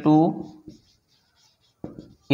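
A man speaks a word at the start. Then a marker pen writes on a whiteboard, faint short strokes across the pause before he speaks again.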